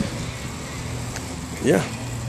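Steady low hum of nearby road traffic under outdoor background noise, with a man's short "yeah" near the end.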